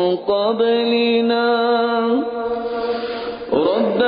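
A man reciting the Quran in slow melodic tilawat style, drawing out long held vowels with gentle pitch turns. About halfway through the note trails off into a breathier fade, and a new phrase begins near the end.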